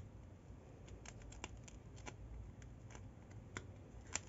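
Faint rustling and scattered small clicks of grosgrain ribbon and thread being handled as a needle is pushed and pulled through for a hand basting stitch.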